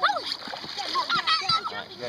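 River water splashing and slapping as a child scrambles across inflatable tubes, with children's high voices calling out over it.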